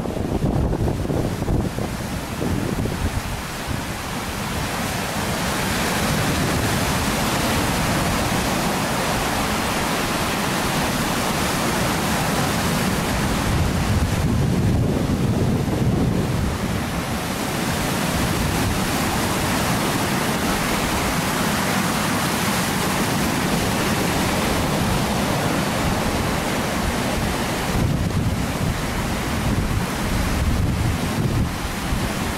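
Lake Superior waves breaking and washing over a rocky shoreline, continuous surf with strong wind buffeting the microphone.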